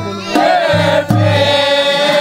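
Group of men singing a Kumaoni Holi folk song together in long held lines, with a deep drum struck with a stick keeping the beat.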